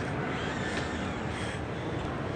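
Steady background noise of a large indoor exhibition hall: an even hiss and hum with no distinct events.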